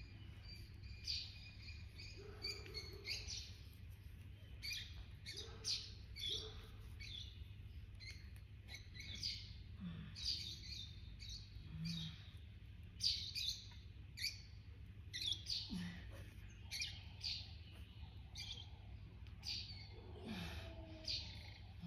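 Birds chirping, many short high calls in irregular succession, over a low steady hum.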